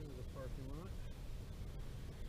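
A person's voice, a few short indistinct syllables in the first second, over steady low background noise.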